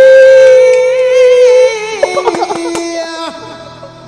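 A man singing a long held note, loud and steady. Near two seconds in it breaks into a wavering drop to a lower, quieter held note, which stops a little after three seconds.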